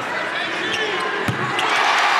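Basketball arena crowd noise during play, with a few short shoe squeaks on the hardwood and a single thud of the ball about a second in. Near the end the crowd swells into a cheer as an NC State jump shot drops.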